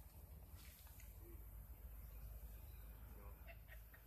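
Near silence: a faint outdoor background with a low steady rumble on the microphone and a few faint short chirps.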